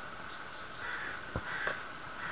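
American crow cawing twice, about a second in, with two sharp clicks among the calls.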